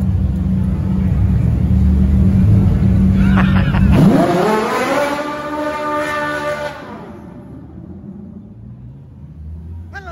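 Supercar engine: a loud, deep rumble for about four seconds, then a hard rev that climbs steeply in pitch and cuts off near seven seconds.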